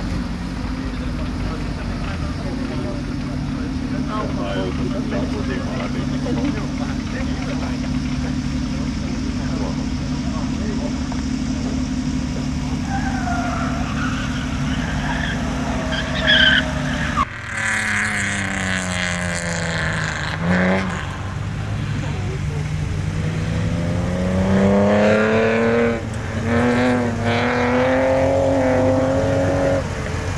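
A steady low hum with brief tyre squeal, then after an abrupt change a racing car's engine drops in pitch as it slows. It then climbs again in steps as it accelerates through the gears, running high near the end.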